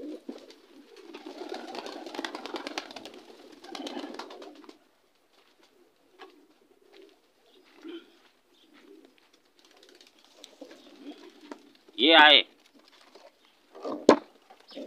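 Domestic pigeons cooing faintly in a loft, with a few seconds of rustling noise at the start. A short, loud burst from a voice comes near the end.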